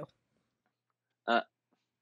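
Near silence, broken about a second in by one short voiced "uh" from a person.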